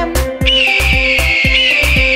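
Upbeat dance music with a steady kick-drum beat. About half a second in, a long, high, slightly falling screech begins over it: an eagle call sound effect.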